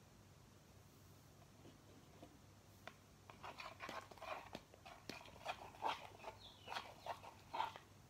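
Liquid laundry detergent glugging and splashing out of a jug's spout into a plastic cup: a quick irregular run of glugs and small splashes, starting about three seconds in and stopping just before the end.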